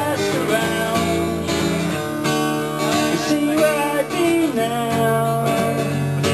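Live pop song in an instrumental passage: strummed acoustic guitar with a wavering melody line over it, and no singing.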